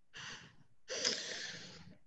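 A person breathing out audibly twice while thinking before answering: a short breath, then a longer, louder sigh-like exhale.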